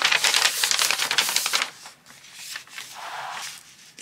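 A sheet of printed paper being slid and handled across a paper book page, a dense rustle and scrape that stops about halfway through, followed by a softer brush of paper.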